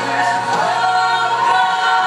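Several voices singing a worship song together in harmony, with a low note held under them for the first second and a half.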